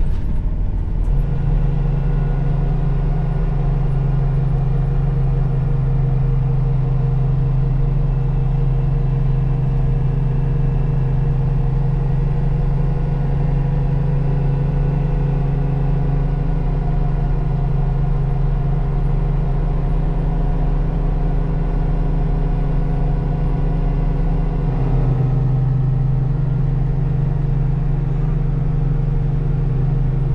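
Engine of a 1984 Toyota Sunrader, a Toyota 22R four-cylinder, pulling steadily uphill under load, heard from inside the cab. Its note shifts slightly near the end.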